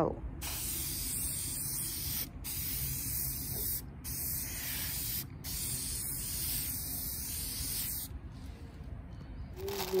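Krylon Crystal Clear acrylic coating aerosol spraying a last coat of sealer onto printed waterslide decal sheets: a steady hiss in four long passes with three brief breaks between them, stopping about eight seconds in.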